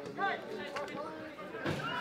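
Faint background voices from around a football pitch, with a little ground ambience, much quieter than the commentary.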